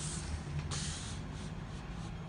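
A paper sheet being moved and turned over, with two soft swishes at the start and just under a second in, over a low steady room hum.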